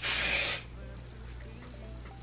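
A single short spray from an aerosol can of hair spray onto the hair, lasting about half a second.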